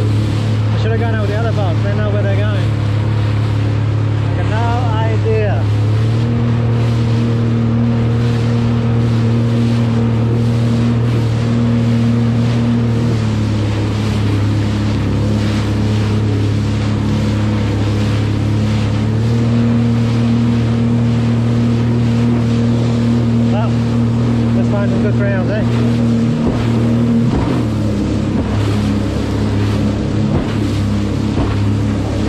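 Jet ski engine running at a steady cruising throttle, with the hull's spray and water rushing underneath. The engine note steps up and down a few times as the throttle changes.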